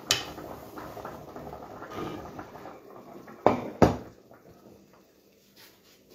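Cooking pot and utensils being handled: a knock right at the start, a few seconds of low clattering and rustling, then two sharp knocks about a third of a second apart.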